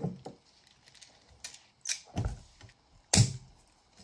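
Light clicks and taps from handling a metal ball chain and small metal charms on a work table, with a duller thump a little after two seconds in and a sharp knock a little after three seconds in.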